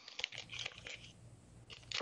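Faint rustling and a few small scattered clicks of hands handling fly-tying material, picking out more seal's fur dubbing.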